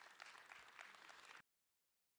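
Faint audience applause, many hands clapping, cut off suddenly about one and a half seconds in.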